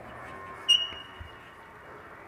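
Chalk writing on a blackboard, a faint scratching. About two-thirds of a second in, a sudden thin high-pitched tone sets in and fades away over about a second.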